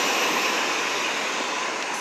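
Steady noise of city street traffic on a wet road, fading slowly.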